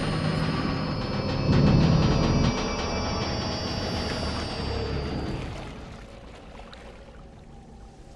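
Klingon Bird-of-Prey transporter effect beaming something aboard: a shimmering cluster of high ringing tones over a low rumble that swells about a second and a half in, with a falling tone, then fades out over the last few seconds. Orchestral film score plays with it.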